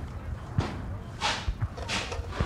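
A few soft thuds and two sharp swishes, one just past the middle and one near the end.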